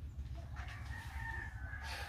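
A rooster crowing: one long, drawn-out crow starting about half a second in.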